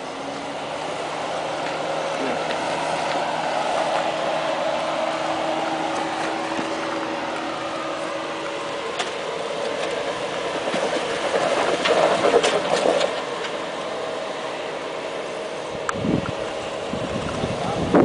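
Jeep Wrangler JK engine running at low, steady revs as the Jeep crawls over a rock ledge, growing louder over the first few seconds. About two-thirds of the way through comes a cluster of knocks and scrapes against the rock, the loudest part.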